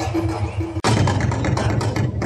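Live drum kit and cymbals played in a band over a steady low bass, with a quick run of sharp strikes after a brief break about a second in.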